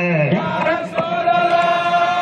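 A man chanting a religious praise song into a microphone, holding long sustained notes: one note drops away just after the start and a new, higher note is held from about a second in.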